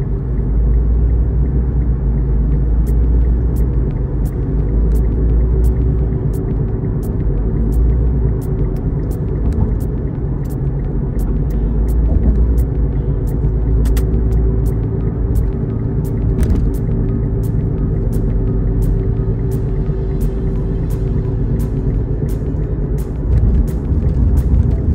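Steady low rumble of road and engine noise inside a moving car's cabin, under music with a steady beat of about two ticks a second.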